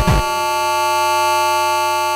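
Electronic music: a busy passage stops just after the start and gives way to one steady, held buzzy synthesizer chord over a low hum.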